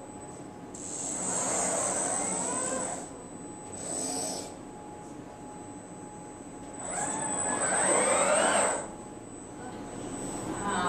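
CyberKnife robotic arm's servo motors whirring in two main runs, each rising and falling in pitch, with a shorter one between, as the arm moves its nose to swap collimators at the Xchange collimator table.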